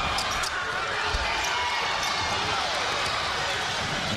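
Steady crowd noise in a college basketball gym during live play, with a few short sharp sounds from the court near the start as players fight for a rebound.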